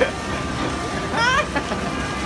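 The steady rushing blower of an arcade ticket-blaster booth, tickets swirling in its cylinder, runs through. Past the middle comes one short squeal from a child that rises in pitch.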